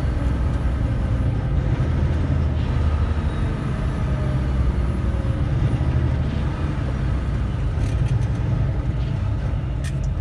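Semi truck's diesel engine running steadily, heard from inside the cab, while the truck takes a roundabout at low speed. A few faint clicks come near the end.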